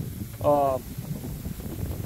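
A man's voice uttering one short syllable, about half a second in, over a low rumble of wind on the microphone.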